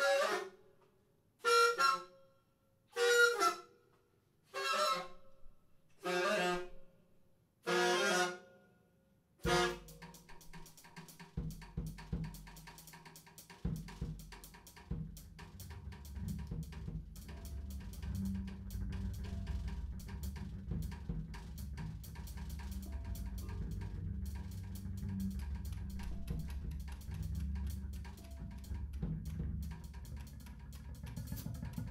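Free-improvised jazz: a wind instrument plays about six short, separate pitched blasts, one every second and a half or so. About ten seconds in, drum kit and electric bass come in and keep up a dense, busy groove with cymbal strokes over a steady low bass.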